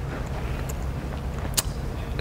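Low, steady rumble of background room noise, with one faint click about one and a half seconds in.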